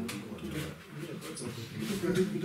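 Faint voices in a small tiled room. The honey pump in view is not heard running.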